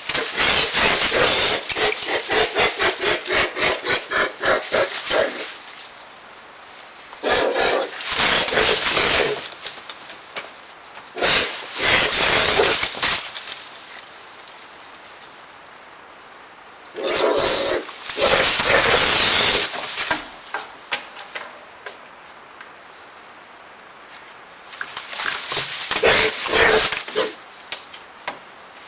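A young, not-yet-flying bird giving repeated harsh, rasping bursts of rapid pulses, each lasting a few seconds, five times with short quiet gaps.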